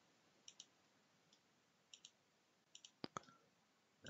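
Near silence, with a few faint, short clicks scattered through it; the clearest comes a little after three seconds in.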